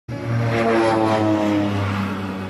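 Propeller aircraft flying by: a steady engine drone whose pitch falls slightly.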